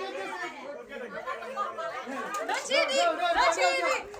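Several people chattering and talking over one another at once, no single voice clear, getting louder in the second half.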